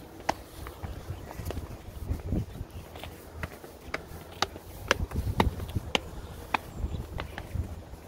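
Footsteps of people climbing stone steps: irregular scuffs and taps, roughly one or two a second, over low bumping.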